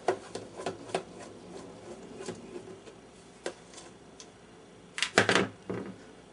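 Hands handling the back panel and cabinet of an Admiral 5R37 tube radio: scattered small clicks and taps, with a louder cluster of knocks about five seconds in.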